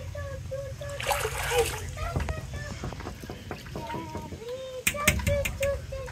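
Water splashing among voices, with a child's short, repeated calls and a few sharp clicks near the end.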